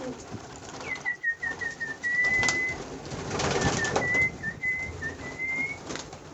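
Domestic pigeons in a loft, cooing, with a burst of wingbeats about three and a half seconds in. Over them runs a high, thin whistle: a quick string of short notes about a second in, a held note, then more short notes rising slightly near the end.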